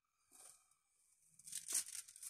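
Parchment paper rustling and crinkling on a baking tray as a spatula spreads cake batter across it, faint, in a short stroke about half a second in and a longer, louder one near the end.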